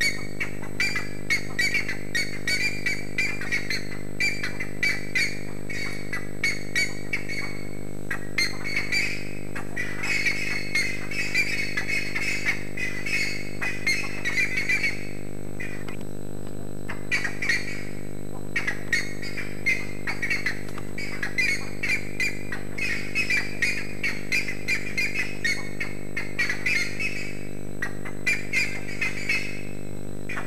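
A flock of birds squawking and chattering, many short harsh calls overlapping in quick succession, thinning briefly about halfway through. A steady low hum runs underneath.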